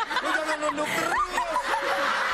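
People laughing and chuckling in short bursts.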